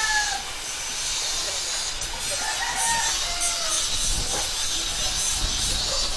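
Steady outdoor background hiss with a faint, drawn-out animal call about two to three and a half seconds in; a low rumble builds in the last two seconds.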